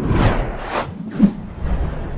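Outro music sting with whooshes: it starts suddenly with a deep bass swell, and several swishing sweeps follow about half a second apart.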